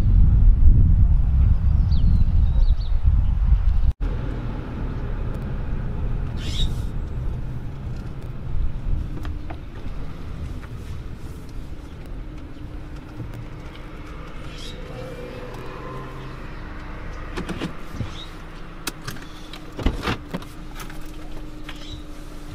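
A car running, heard from inside the cabin as it sits at an intersection: a steady low hum with a few sharp clicks and knocks near the end. For the first few seconds there is a louder low rumble before a cut.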